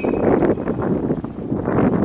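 Wind buffeting the camera microphone: a rough rushing noise that rises and falls.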